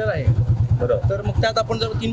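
A man speaking over a low, evenly pulsing rumble of a vehicle engine running at idle.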